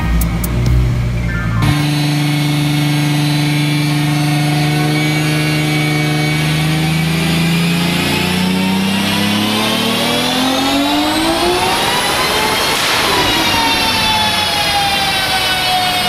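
Single-turbo 1997 Toyota Supra's built 3.0-litre straight-six revving up in one long, unbroken climb in pitch for about ten seconds, then easing off near the end. A few seconds of hip-hop music come before it.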